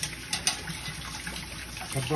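Kitchen tap running, its water splashing over wooden chopsticks being rinsed in a stainless-steel sink, with a couple of light clicks about half a second in.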